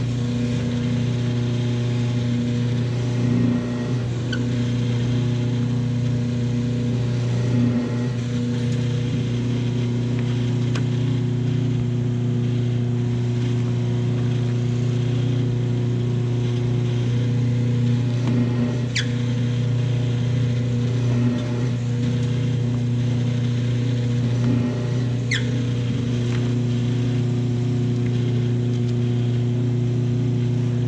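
Rosco 350 three-spindle paper drill running, its motor and spindles giving a steady, even hum. A couple of brief sharp clicks in the middle.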